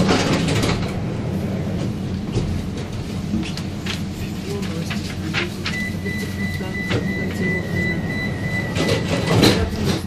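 Inside a Vienna U-Bahn Type T1 car standing at a platform: the car's equipment hums steadily. A little past halfway a steady high warning beep sounds for about three seconds, and near the end comes a brief noisy clunk, as the doors close before departure.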